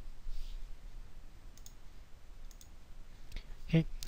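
Soft computer mouse clicks in a quiet room: two quick pairs about a second apart, then a single click shortly before the end.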